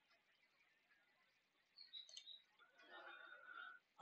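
Near silence: room tone, with a faint short chirp about two seconds in and faint indistinct sounds near the end.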